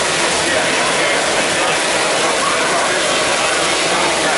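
DJI Inspire 1 quadcopter flying close by, its spinning propellers giving a steady whir, mixed with the chatter of a crowd in a large hall.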